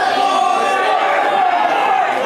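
A crowd of wrestling spectators shouting and talking over one another, with one long held shout standing out above the rest.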